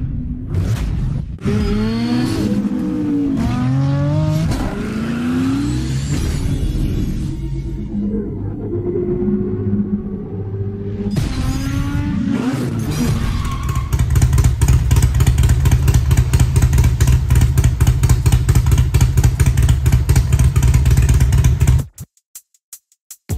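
Motorcycle engine revved up and down repeatedly, then running louder and steadily with a rapid pulse for the last several seconds before cutting off.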